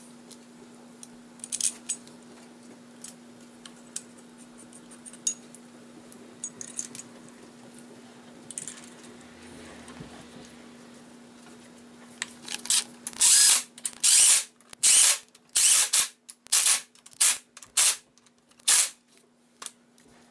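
Steel camshaft retainer plate and its bolts being handled and started on a 5.3 LS engine block, with light metallic clicks and clinks. From about two-thirds of the way through come about ten loud, short bursts of ratchet clicking, one every moment or so, as the retainer plate bolts are run down.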